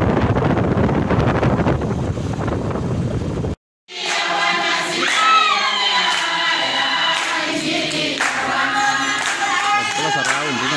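A rough, loud noise for the first few seconds, then a short break. After it a group of people sing together to steady hand clapping.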